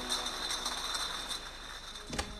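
Glass bottles clinking against one another as they ride along a factory conveyor line, over the steady running noise of the conveyor machinery.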